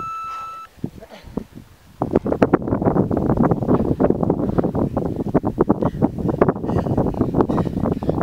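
A workout interval timer gives a single beep of under a second, signalling the start of a 40-second sprint interval. From about two seconds in, gusty wind buffets the microphone steadily.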